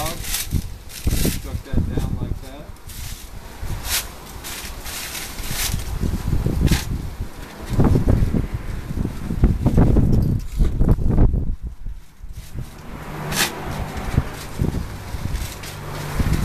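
Husk of a roasted ear of corn being peeled back by hand: dry husk rustling and tearing, with several sharp crackles spread through the clip. Low rumbles of wind on the microphone come and go around the middle.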